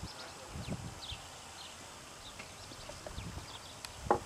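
Faint outdoor background: scattered short, high chirps over a low rumble.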